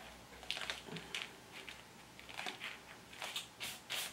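Parchment paper pattern crinkling and rustling in faint, irregular crackles as it is handled and pins are pushed through it into cotton fabric.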